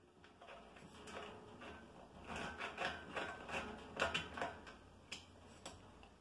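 A stainless steel post being unscrewed by hand from a Cornelius keg: a run of faint metallic clicks and rubs as the loosened threads turn.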